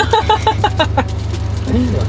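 Car engine idling, a steady low hum heard from inside the cabin, under a voice in the first second.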